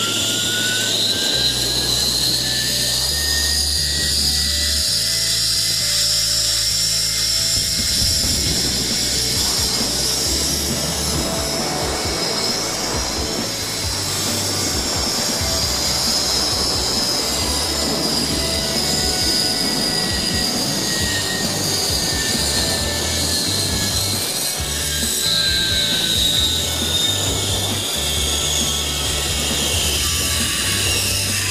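Zipline trolley's pulley wheels running along the steel cable: a high whine that rises in pitch as the rider gathers speed, holds through the middle of the ride and falls near the end as the trolley slows, over a rush of wind noise.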